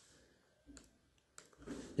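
Near silence with a couple of faint clicks, the sharpest about a second and a half in, and a soft breath just before speech resumes.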